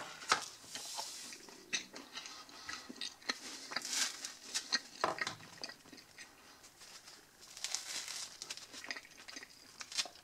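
Crusty baguette crust crackling and crunching as it is squeezed and torn apart by hand, in several bursts of small crackles and crumbly rustles.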